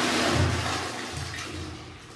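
Wall-hung toilet flushing: water rushes and swirls through the ceramic bowl, loudest at first and fading steadily toward the end.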